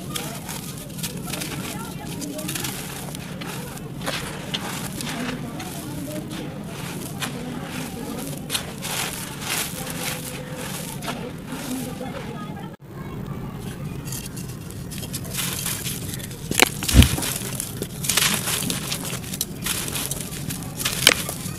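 Dry sandy clay lumps crumbled by hand, with crackling as they break and crumbs pattering onto loose dry dirt, and a louder crunch and thud a few seconds from the end. A steady low rumble runs underneath.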